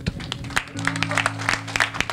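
Scattered hand-clapping over sustained low instrumental chords, the chord changing under a second in.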